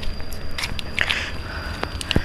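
Close crackling and rustling of dry leaves, twigs and shrub branches as someone pushes through a garden bed, in scattered short clicks and crunches. A low rumble of road traffic and a faint steady high-pitched tone run underneath.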